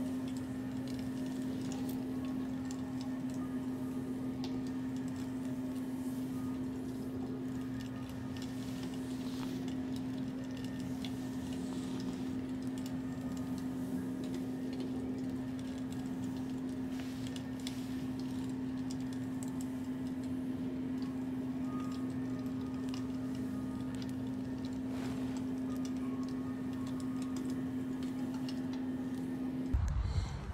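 Long acrylic fingernails scratching and tapping on a bare back and shoulder, heard as soft scattered clicks and scratches over a steady low drone tone.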